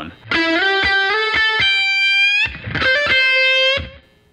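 Les Paul electric guitar playing a blues lead lick: a quick run of picked notes into a long held note that is bent up slightly at its end, then after a short break a second short phrase ending on a held note.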